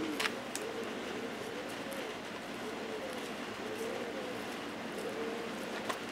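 A dove cooing in the background, a low soft note repeated about two times a second. A few faint crisp clicks come from the gopher tortoise biting into romaine lettuce.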